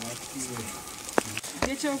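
Wet snow and rain pattering on umbrellas and coats, a steady crackling hiss, with a sharp click about a second in.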